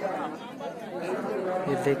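Crowd chatter: many men's voices talking over one another as worshippers gather and settle onto prayer mats, with one man's voice starting up near the end.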